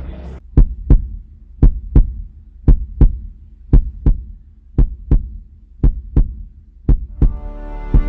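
Heartbeat sound effect: paired low thumps, lub-dub, about once a second, seven times, over a low hum. Background music fades in near the end.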